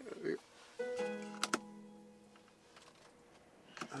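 A single guitar chord rings out about a second in and fades over a couple of seconds, with two sharp clicks soon after it and a brief voice sound at the very start.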